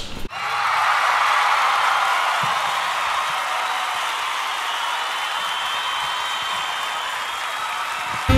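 Steady applause that starts abruptly and tapers off slowly.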